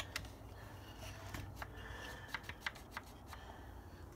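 Faint handling of a vintage chainsaw: a few scattered light clicks and taps about a second apart, with no engine running.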